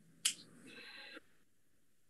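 A single sharp click about a quarter of a second in, then a faint sound lasting about a second over quiet room tone.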